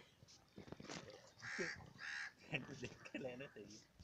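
Boys' voices calling and shouting, with two short harsh calls about a second and a half and two seconds in.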